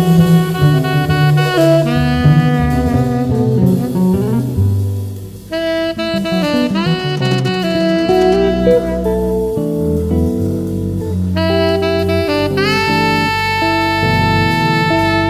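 Live jazz: a saxophone plays long, held notes over the band's accompaniment, with a short dip in level about five seconds in before a new phrase starts.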